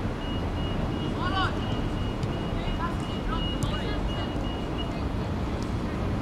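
Outdoor ambience at a football pitch: a steady low rumble of city noise or wind, with distant voices of young players and a few short, faint high chirps.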